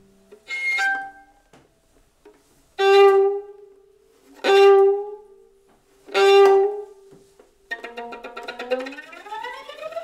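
Acoustic violin playing four loud, short bowed notes with pauses between them. Near the end a busier passage follows, with several notes sliding upward together.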